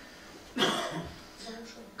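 A person coughs loudly close to the microphone about half a second in, followed by a few fainter throat sounds.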